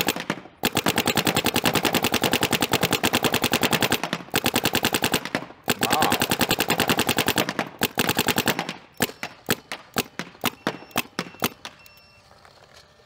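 Paintball marker firing long, rapid strings of shots, with a few brief breaks. Near the end the shots thin out to scattered single pops.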